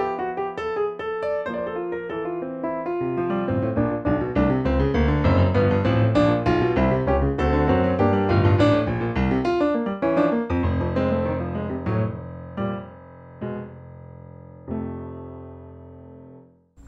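Roland RP102 digital piano playing its Bright Piano tone: a flowing passage of chords and runs that thins about two-thirds of the way in to a few separate chords, each left to ring and fade.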